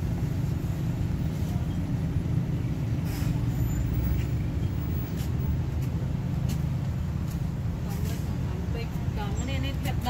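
Steady low mechanical rumble, like a running engine, with a few faint clicks; a voice starts near the end.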